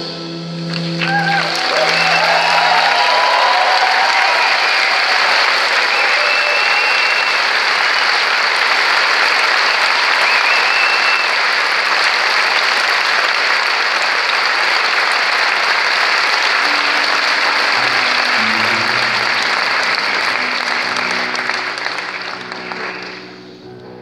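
Concert audience applauding steadily at the end of a jazz piece, with a few cheers near the start. The applause fades out in the last couple of seconds.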